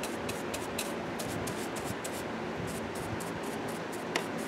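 Bristle paintbrush brushing varnish onto a carved wooden figure: a steady run of short, quick strokes.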